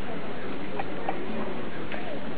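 A few light metallic clicks as the parts of a hand coin-minting die are set in place on a log block, before any hammer strike, over steady street crowd noise.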